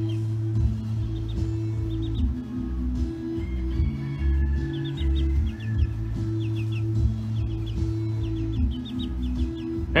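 Background music over which newly hatched chicks peep in quick clusters of short, falling chirps.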